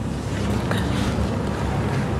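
Steady rumbling hiss of room noise with no speech, a low hum under it.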